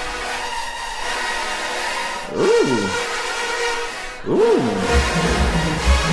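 Marching band brass section playing loud, with sousaphones and trumpets sounding sustained chords. Two swooping rise-and-fall glides come about two seconds apart, and low drum hits join near the end.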